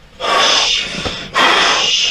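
A man breathing heavily: two loud, rushing breaths, each nearly a second long, as he catches his breath after a jolting manipulation of his back that has left him feeling numb.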